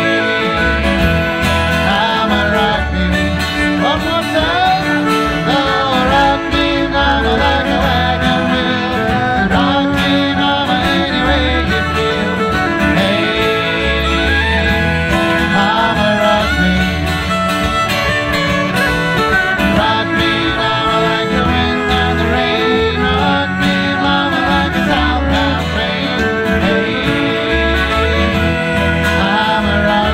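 Live acoustic folk band playing an upbeat bluegrass-style song on fiddle, banjo, acoustic guitar and bodhrán, with voices singing along. A steady drum beat runs under it.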